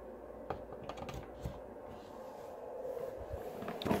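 A few faint clicks and scrapes as a power plug is pushed into a wall outlet, then low handling rustle, with a sharper click near the end.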